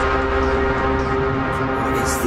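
Instrumental passage of a hip-hop remix with no vocals: held chords over a steady low bass.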